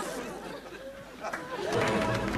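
Murmur of studio audience chatter after a comedy sketch, with music starting near the end.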